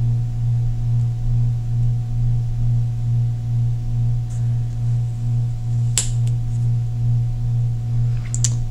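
A steady low hum with a slight waver in level, and one sharp click about six seconds in.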